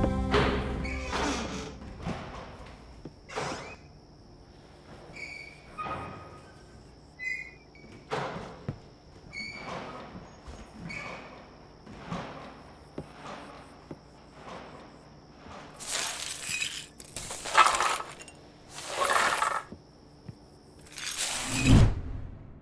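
The song's last chord dies away, then a run of scattered sharp knocks and thuds over a faint, steady high whine. Near the end come four loud crashes about a second and a half apart, the last with a deep boom.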